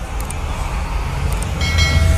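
Logo-intro sound effects: a deep rumbling swell with a hiss over it, two light clicks, and a short bright chime near the end.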